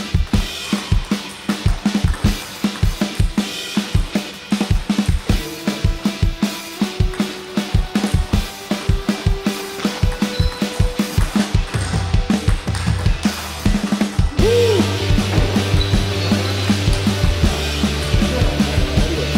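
Background music with a steady drum beat and sustained bass notes, changing section about fourteen seconds in.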